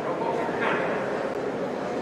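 A short, sharp shout about half a second in, over the steady murmur of a large sports hall.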